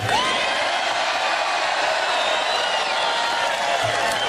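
A large rally crowd cheering and whooping, many voices shouting together in a steady roar, answering a speaker's greeting.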